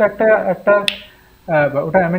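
A man talking, with one sharp click just before a second in, then a short pause before the talk resumes.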